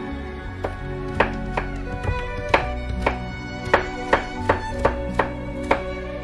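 Chef's knife chopping carrot into fine batonnets on a cutting board: about a dozen sharp taps of the blade on the board, roughly two a second, over background music with violin.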